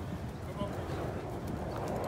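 Thoroughbred racehorse walking on a dirt track, its hoofbeats clip-clopping, with people talking indistinctly in the background.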